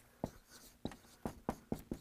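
Dry-erase marker writing on a whiteboard: a quick run of short strokes, about four a second.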